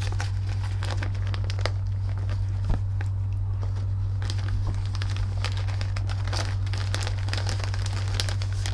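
Papers in a folder rustling and crinkling as pages are handled and turned, in scattered small clicks. A steady low hum runs underneath and is the loudest thing.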